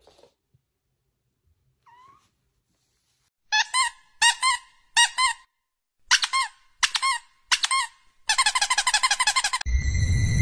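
Squeaky toy squeaking in short squeaks: three, a pause, three more, then a fast run of squeaks that stops suddenly near the end. The first few seconds before the squeaks are nearly silent.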